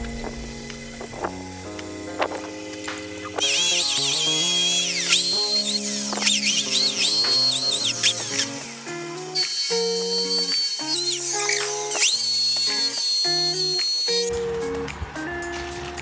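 Electric drill running against the underside of a wall cabinet being mounted, in two long runs from a few seconds in, its whine dipping in pitch and recovering as it bites, over background music.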